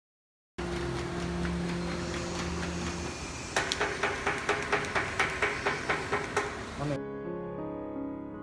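Paging machine running, feeding flat cardboard medicine-box blanks onto its conveyor belt one at a time: a sharp click about four times a second over the steady hum of the machine. The clicking comes in after a stretch of plain running hum, and piano music takes over near the end.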